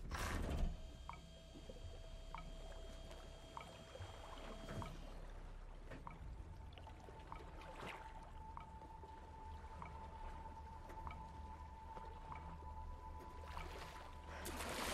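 Sparse film score: a quiet held tone, replaced about five seconds in by a slightly higher held tone, over soft regular ticks a little over a second apart, with a low rumble and faint water sounds beneath.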